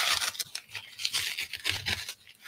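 Corrugated cardboard mailer being handled: irregular scraping and rustling as fingers work the edge of its flap, loudest about the first half-second.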